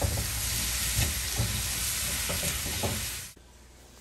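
Mushrooms and broccoli sizzling in oil and butter in a wok while being tossed and stirred with a spatula, with a few light scrapes against the pan. The sizzle cuts off abruptly a little after three seconds in.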